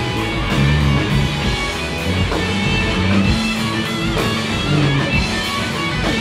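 Live rock band playing an instrumental passage: electric guitars over drums keeping a steady beat, loud and unbroken.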